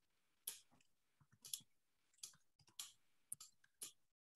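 Faint, irregular clicks, about seven over four seconds, with quiet between them.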